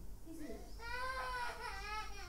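A baby crying: one long, quiet wail that starts about a third of a second in, holds, then slowly falls in pitch and carries on past the end.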